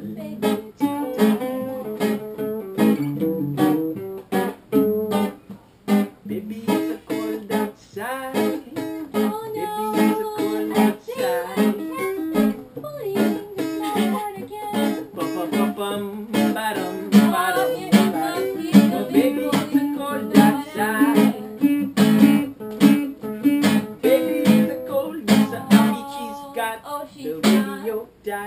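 Two acoustic guitars played together in a steady strummed rhythm, with single plucked notes among the chords.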